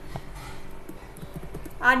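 Several light clicks from a computer keyboard and mouse, a few to the second, with a voice starting just before the end.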